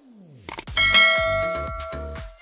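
Subscribe-button pop-up sound effect: a falling swoosh, a couple of quick clicks about half a second in, then a bright bell ding that rings on and slowly fades.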